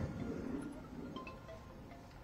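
A pause between spoken phrases: a voice fades out in the first half second, leaving a low background with a few faint, brief tones.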